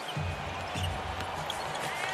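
A basketball dribbled on a hardwood court: a few short, sharp bounces over a steady low bed of piped-in arena music.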